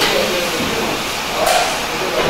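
Tyre-changing machine in use as a winter tyre is worked onto a steel rim: a steady hiss with two sharp clicks, one near the start and one about one and a half seconds in.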